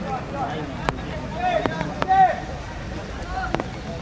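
Shouts from footballers and spectators during a match: several short calls, the loudest about two seconds in, with a few sharp knocks over a steady outdoor hiss.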